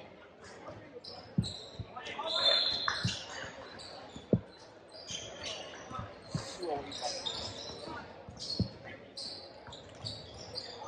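Basketball being dribbled on a hardwood gym floor: a string of irregular bounces, with one louder bounce a little after four seconds in.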